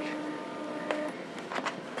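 Doxie Flip flatbed scanner's scan-head motor running with a steady whine during a scan, stopping about a second in as the scan finishes, followed by a few light clicks.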